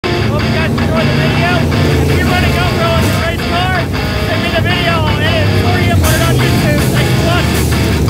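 A pack of dirt late model race cars running past on a dirt oval, their engines a loud steady drone, with a man talking over them.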